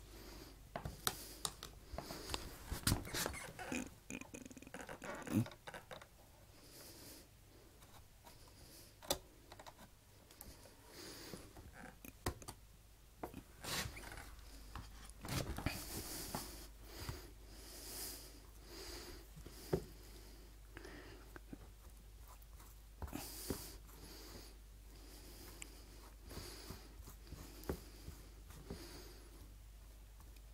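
Table knife spreading margarine over slices of soft white bread: soft scraping and rubbing strokes with scattered sharp clicks of the knife and plate, at uneven intervals, the louder ones in the first few seconds.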